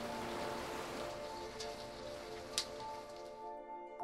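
Soft background music of held notes over the steady hiss of rain, with two short clicks in the middle. The rain hiss drops away shortly before the end, leaving the music.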